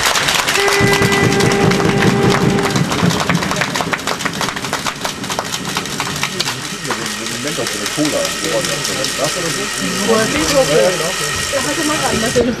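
Spectators in a sports hall clapping and making noise, with a steady horn blast lasting about two seconds near the start and voices calling out in the second half.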